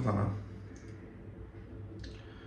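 A man's voice trailing off, then quiet room tone with a steady low hum and one faint click a little under a second in.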